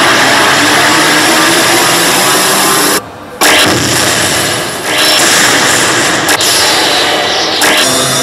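Grand Cross Legend coin-pusher machine playing its Legend Zone entry effects: a loud, dense noisy roar that cuts out abruptly for a moment about three seconds in, then comes back with several sweeping whooshes.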